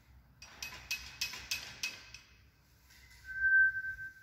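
A rapid run of raspy clicks, then, about three seconds in, an African grey parrot gives one steady high whistle about a second long, the loudest sound here.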